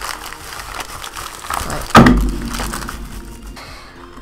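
Bubble-wrap packaging crinkling and rustling as it is pulled open by hand, with one loud thump about two seconds in.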